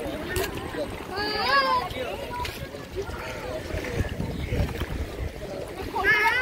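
People's voices while bathing in a river: one high, wavering call or shout about a second in and another at the very end, with quieter talk between, over a low rumble.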